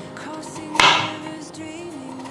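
A chef's knife cuts once through a carrot and strikes the cutting board, a little under a second in, with soft background music underneath.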